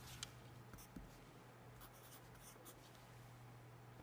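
Faint scratching of a pencil writing on paper, in a few short strokes, over a steady low hum.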